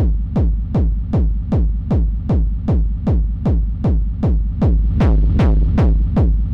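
Synthesized hardstyle gated kick drum looping at about two and a half hits a second. Each hit is a sharp click that sweeps down in pitch into a heavy reverb-and-distortion rumble, and the distortion is being turned up as it plays. The hits grow slightly brighter about five seconds in.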